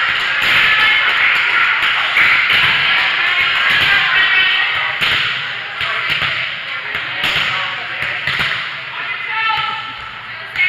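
Echoing gym hall ambience: high-pitched voices of players and onlookers calling and chattering, with a few sharp knocks.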